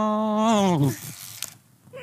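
A person's voice singing one long held note, a mock-dramatic "tiiin", that slides down in pitch and dies away just under a second in, followed by faint rustling.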